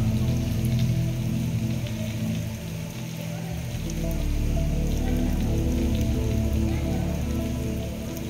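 Soft background music of sustained low notes shifting in pitch, over a steady rain-like hiss.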